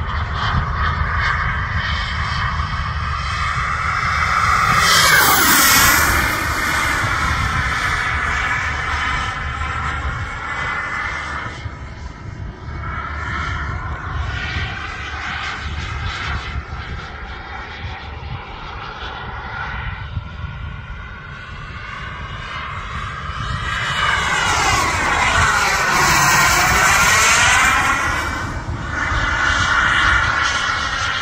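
Radio-controlled model F-15 Eagle jet flying, its engine whine running steadily and swelling on two passes. On the first pass, about five seconds in, the pitch drops quickly. The second, longer and louder pass comes near the end.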